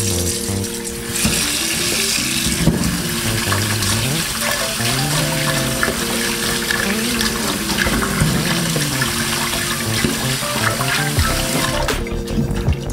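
Tap water running into a stainless-steel bowl in a sink, splashing as cucumbers are rubbed clean by hand under the stream, with background music.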